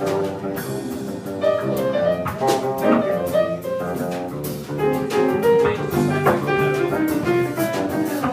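Live jazz trio playing: grand piano and electric bass guitar over a drum kit, with steady cymbal and drum strokes.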